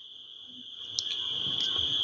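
Steady high-pitched insect trill, unbroken, with a faint click about a second in.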